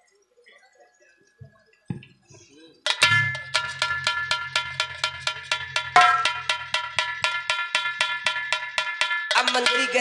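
After near silence, a rapid, even run of bell-like metallic strikes starts suddenly about three seconds in, about five a second, each ringing on over a low hum. This is musical accompaniment from the stage band. Near the end, gliding tones join in.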